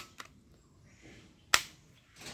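Plastic toy revolver being fired, giving two sharp snaps, one at the start and one about a second and a half in, with a faint click just after the first.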